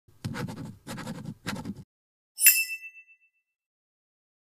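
Logo intro sound effect: three short scratchy strokes, then a single bright chime about halfway through that rings out briefly.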